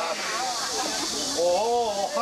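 A person's voice in long, drawn-out tones that rise and fall, over a steady hiss.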